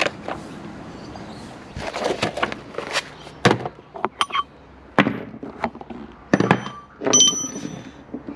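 Hand tools being handled and rummaged through: a string of separate knocks and clunks, then a ringing metallic clink near the end as a socket extension is picked up.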